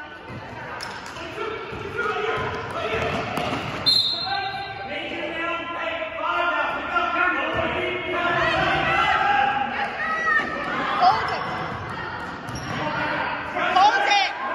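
Many overlapping voices of players and spectators calling out in a large, echoing gym, with a basketball bouncing on the hardwood court.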